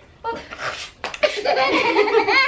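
A young child laughing, the laughter growing fuller about a second in.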